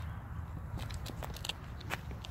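Low rumble of wind on a phone's microphone outdoors, with a few faint scattered clicks.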